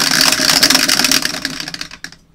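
Two dice rattling inside the clear plastic dome of a motorized dice roller: a dense, fast clatter over the motor's hum, cutting off abruptly near the end.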